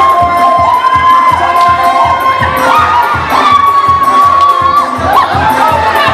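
Dance music with a steady, fast beat, under a crowd shouting and cheering with held, stepping voice-like tones.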